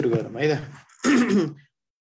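Speech only: the teacher's voice talking in two short stretches with a brief break between them.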